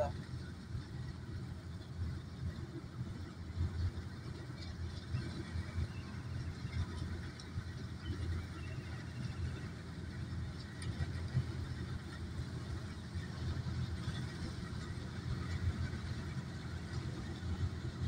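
Distant combine harvester running steadily while cutting a paddy field: a low, even engine rumble.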